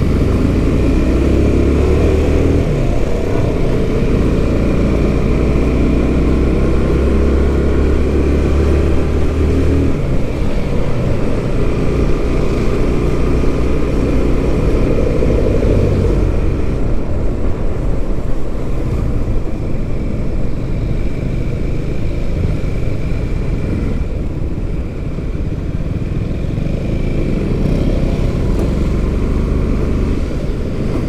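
Motorcycle engine running under way, heard from the riding bike, with wind and road noise over it. The engine note holds steady for the first ten seconds, then turns uneven as the speed changes.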